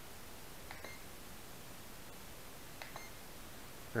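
Two short, faint electronic beeps about two seconds apart from the Blade quadcopter's radio transmitter as its right control stick is pressed in to switch it to low-rate mode.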